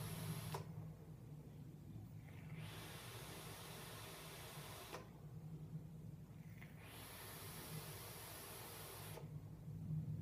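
E-cigarette with a dragon nano coil being drawn on: a hiss of air pulled through the atomizer as the coil fires, each drag lasting about two and a half seconds. The hiss stops for about two seconds between drags while the vapour is exhaled.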